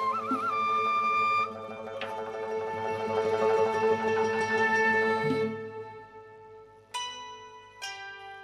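Shashmaqam ensemble playing an instrumental piece: a transverse bamboo nay flute carries the melody in long held notes, with a quick trill about a quarter of a second in, over a sustained accompaniment. Near the end the flute drops out and two sharp struck-string notes ring out.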